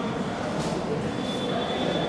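Steady rushing background noise in a pause between a speaker's phrases over a microphone and sound system, with a faint thin high tone in the second half.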